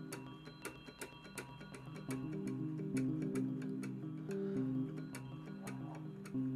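Ableton's Electric modelled electric piano playing overlapping, held notes, with many sharp clicks on the strikes. The mallet stiffness is being turned up, so the tone grows brighter and fuller from about two seconds in.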